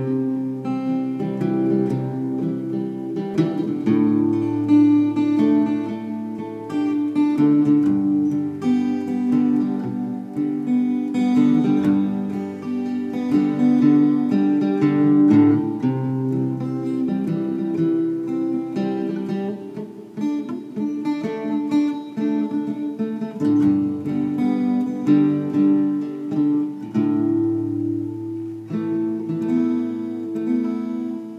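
Acoustic guitar played solo, strumming chords that change every few seconds.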